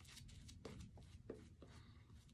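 Faint, soft strokes of a shaving brush working shaving-soap lather over the face, about four in the span.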